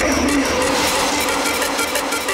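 Hardtekk electronic dance music in a break with little bass drum: sustained synth tones and a noisy wash over a fast, high-pitched rhythmic ticking.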